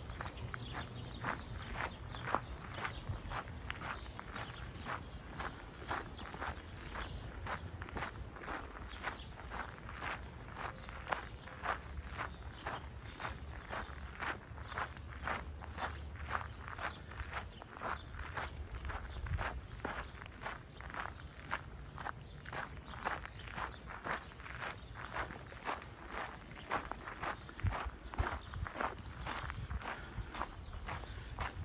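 Footsteps on a gravel path at a steady walking pace, about two steps a second.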